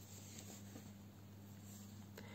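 Near silence: a faint steady low hum with room tone.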